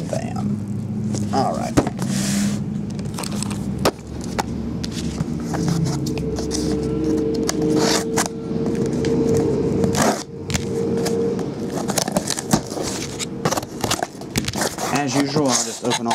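Scissors cutting through the packing tape of a cardboard case, then the case being handled and opened, in a run of scrapes and sharp clicks. Steady held notes of background music play under it for much of the time.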